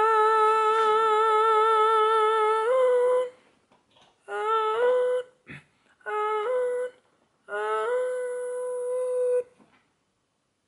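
A man singing wordless sustained notes in vocal practice. One long held note with vibrato slides up a step about three seconds in, then three shorter phrases follow with brief pauses between them, each rising into a held high note.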